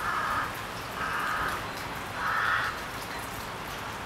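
A crow cawing four times, about once a second, over a steady hiss of outdoor ambience.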